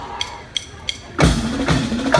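Three short clicks in even time, like a drummer's stick count-off, then a brass marching band with sousaphones and drums strikes up loudly a little over a second in.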